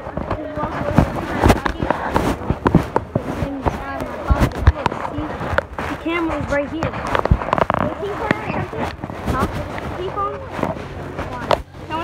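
Muffled voices talking, broken by many sharp knocks and rubbing noises from a phone being handled close to its microphone.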